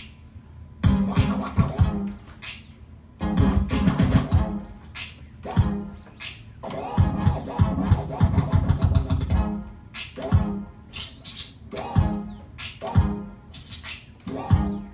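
Turntable scratching: a musical sample cut back and forth by hand on a record through the DJ mixer, in bursts of rapid strokes with short pauses between, thinning to single cuts over the last few seconds.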